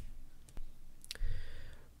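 Two brief, sharp clicks about half a second apart, the second about a second in, followed by a faint short sound, over low room noise.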